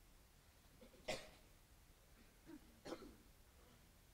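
Near silence broken by two short coughs, one about a second in and another about three seconds in.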